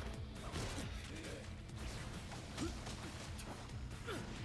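Faint anime fight-scene audio, low in the mix: music with scattered impact and whoosh effects.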